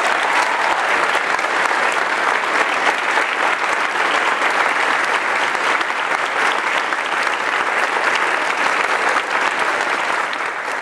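A large group applauding, a dense, steady clatter of many hands clapping.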